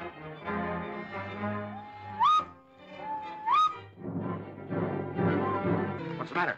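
Two whistled calls over film-score background music. Each is a held note sliding up to a higher one, about two seconds and three and a half seconds in. The music grows fuller near the end.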